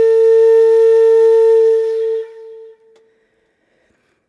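A flute holding one long, steady note that fades away about two and a half seconds in.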